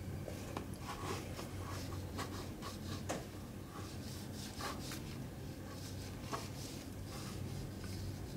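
Faint rubbing and scraping of a wooden stick spreading sticky Tanglefoot compound over tape wrapped around a tree trunk, in short irregular strokes with a few sharper ticks.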